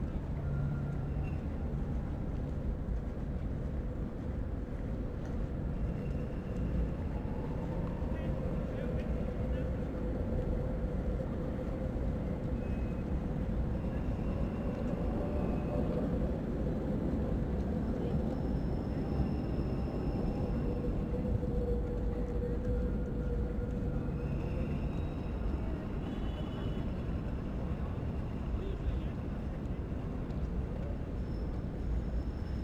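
City street ambience: a steady background of distant road traffic with indistinct voices of people nearby and a steady hum running through it.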